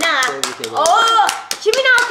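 Irregular hand claps, a dozen or so sharp ones, over excited voices including a child's.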